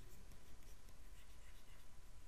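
Faint scratching and light tapping of a stylus writing on a tablet, over a low steady background hiss.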